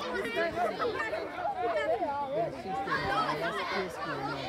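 Overlapping chatter of several people talking at once, with no single clear speaker.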